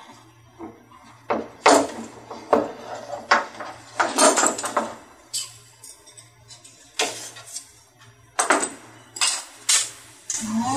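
Bar clamps being loosened and taken off a glued wooden piece, then set down on a wooden workbench: about a dozen irregular clicks, knocks and clatters of metal bars and clamp jaws against wood.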